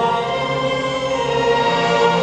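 Live orchestra with strings accompanying a group of singers on microphones in a pop-song arrangement, with long held notes.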